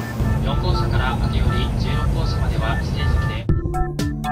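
Low rumble of a bullet train at a station platform with voices over it, under a music track with long held notes. About three and a half seconds in the rumble cuts off, leaving the music alone with sharp clicking percussion.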